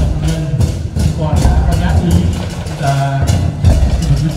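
Saxophone marching band playing a processional tune, with held horn notes over a steady drumbeat.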